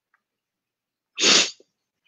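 A single short, sharp burst of breath from the man about a second in, as loud as his speech, between stretches of near silence.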